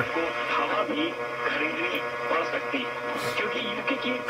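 Weak AM broadcast station at 540 kHz received on a software-defined radio and played through its speaker: a faint broadcast voice under hiss and a steady buzz of interference.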